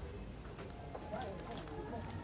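Faint, indistinct chatter of people talking in a gathering, over a steady background hum of the crowd.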